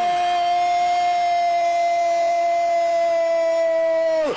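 A TV football commentator's long drawn-out goal shout, one loud note held for about four seconds with its pitch easing down slightly near the end.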